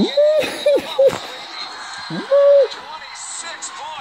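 A man whooping and yelling in excitement at a basketball three-pointer. There are several short "woo" shouts right at the start and one longer held whoop about two seconds in, over the game broadcast playing from a phone.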